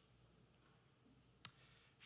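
Near silence, broken once by a single short, sharp click about a second and a half in.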